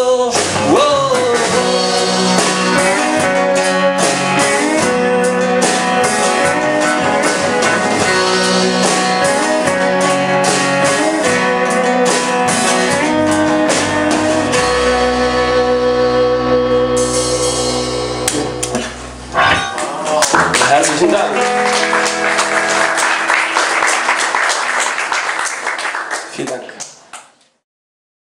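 A rock band playing live: acoustic and electric guitars, bass guitar and a drum kit playing the song's closing section. About 19 seconds in the band briefly drops out and comes back in on a final held chord with ringing cymbals, which dies away at the end.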